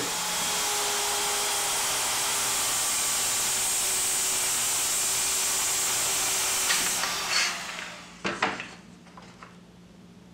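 Circular saw ripping a sheet of plywood along a track guide, running steadily for about seven seconds, then switched off and dying away. A couple of knocks follow.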